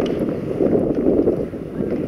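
Wind rumbling on the microphone, a steady low rush that eases slightly near the end.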